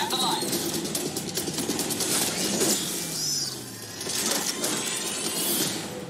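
Sound effects from an animated sci-fi trailer. A dense, noisy mix with sharp hits in the first couple of seconds and a slowly falling pitch about three seconds in, dying down near the end.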